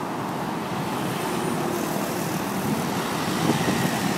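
Steady hum of distant road traffic.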